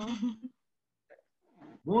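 A person's voice finishing a spoken greeting in the first half-second, then silence, then another voice starting just before the end.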